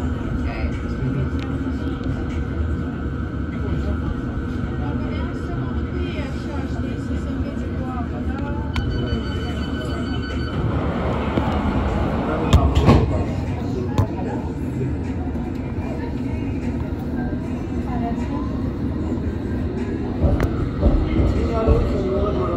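Interior of a London Underground District line train standing at a platform: a steady low hum with passengers' voices in the background. About nine seconds in, a high two-tone door warning sounds for a second or two, followed a few seconds later by a loud thud as the doors shut. Near the end the train pulls away.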